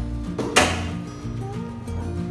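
Background music with a single sharp metallic clunk about half a second in: the car's bonnet latch being released as the bonnet is lifted.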